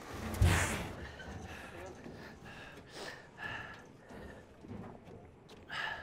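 A forceful breathy exhale about half a second in, followed by quieter breathing and scuffling as a large crocodile is heaved along. Another short breathy burst comes near the end.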